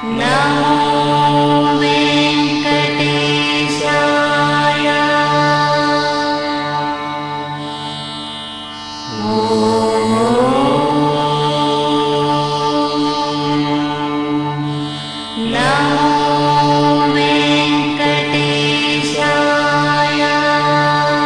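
Devotional chanting of hymns in long, held tones over a steady low drone, in three phrases. Each phrase starts with an upward slide in pitch, about nine seconds and then fifteen and a half seconds in, after a brief drop in level.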